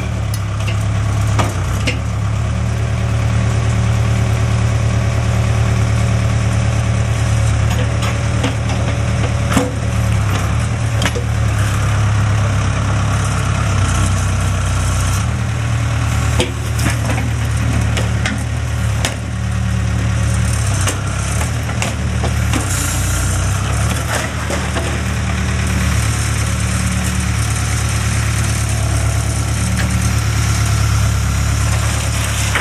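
Diesel engine of a Case 580 Construction King backhoe loader running steadily under load. Over it come repeated sharp cracks and crunches of splintering wood as the bucket tears out and rakes through the garage's timber roof framing.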